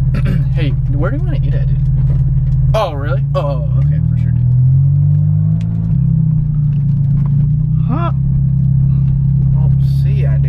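Car engine droning steadily, heard from inside the cabin while driving. About three seconds in it rises in pitch as the car accelerates, then settles again near six seconds.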